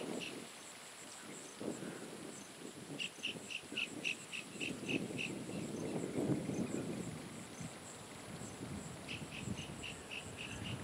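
Wildlife ambience: a small creature's high, repeated chirp, about three a second, comes in runs about three seconds in and again near the end, over a faint steady high insect hiss. Soft low rustling swells in the middle.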